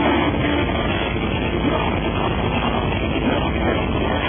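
Metalcore band playing live, loud and unbroken, with heavy electric guitars.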